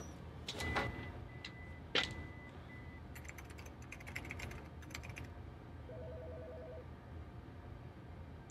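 Office photocopier clicks and short electronic button beeps, with a sharp click about two seconds in. Then a quick burst of computer keyboard typing, and a short pulsed electronic trill like a desk phone ringing, over a steady low hum.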